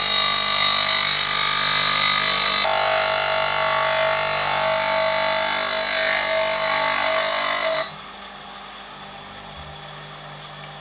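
Bench grinder's pink wheel grinding the edge of a steel blade cut from an old circular saw blade, held in a clamping jig: a loud, steady grinding with high ringing tones whose pitch shifts a few seconds in. The grinding stops about eight seconds in, leaving the grinder's motor running with a low hum.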